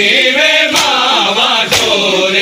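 Men's voices chanting a noha lament, with sharp slaps of hands beating on chests (matam) keeping time about once a second.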